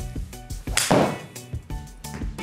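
A fairway wood striking a golf ball off a hitting mat: one loud whack a little under a second in. Background music with a steady beat plays under it.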